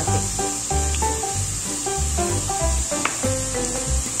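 Background music with a stepping melody and bass notes, over the steady sizzle of diced onion and peppers frying in annatto oil in a pot.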